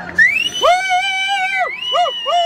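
A spectator's loud, high-pitched yell cheering on a horse in the lineup: one long held shout lasting about a second, followed by a short second shout at the end.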